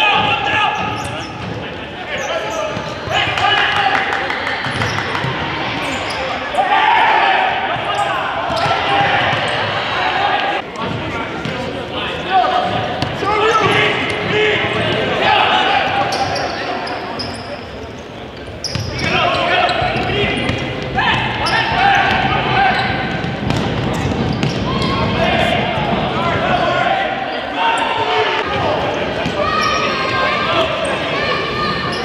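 Many voices of players and spectators calling and chattering, echoing in a gymnasium, with the sharp thuds of a futsal ball being kicked and bouncing on the hardwood floor.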